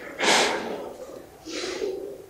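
Breathy, stifled laughter: two short puffs of laughing breath, the first about a quarter second in and a fainter one near the end.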